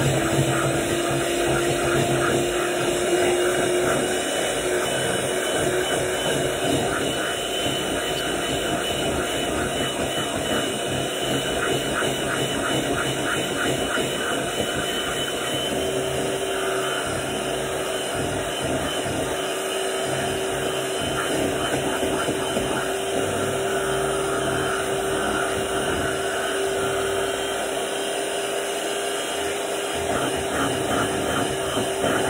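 Electric hand mixer running steadily, its beaters whipping thick shea butter in a plastic bowl, with a steady motor whine that rises slightly in pitch over the first few seconds.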